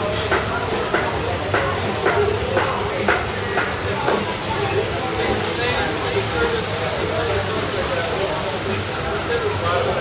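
Background chatter of people's voices over a steady low hum, with footsteps at about two a second during the first four seconds.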